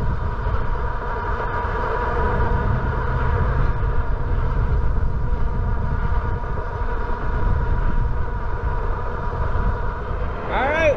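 Wind rushing over the microphone on an electric bike cruising at about 27 mph, as a steady low rumble. A constant high whine from the 750 W rear hub motor runs under it, held at a fixed speed by cruise control.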